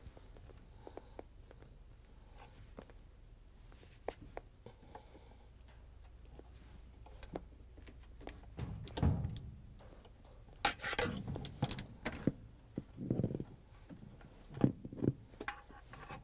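Hand-work noises on a washer tub's sheet-metal mounting plate. First there are light scattered clicks as plastic wiring-harness clips are squeezed and pulled free. About halfway through comes a dull thud, then a run of irregular knocks and scraping as the tub assembly is handled.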